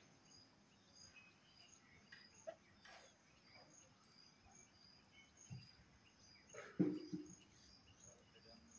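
Faint outdoor background with a high chirp repeating about twice a second, a soft knock about two and a half seconds in, and a brief louder sound near the end.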